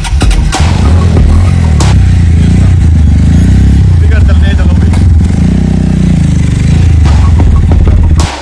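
Sport motorcycle engine running after a restart on a flat battery, its pitch rising and falling a couple of times as it is revved and ridden off.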